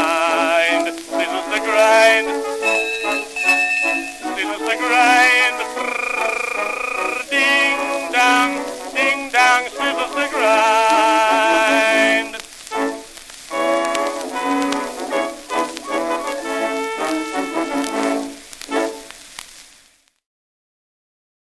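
Small studio orchestra on a 1904 acoustic-era disc recording playing the closing instrumental passage of the song, with the thin sound of early acoustic recording that has no deep bass. The music stops just before the end.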